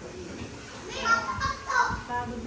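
Indistinct high-pitched voices, like children talking, rising from about a second in.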